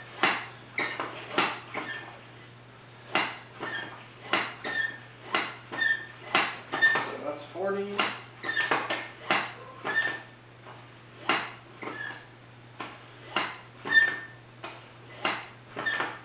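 Double-cylinder foot pump worked steadily by foot to inflate a bicycle tyre, its metal frame clacking with each stroke about twice a second, with a short high note on many strokes and two brief pauses.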